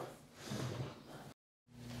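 A man's faint breath, short and soft, followed by a moment of dead silence at an edit cut.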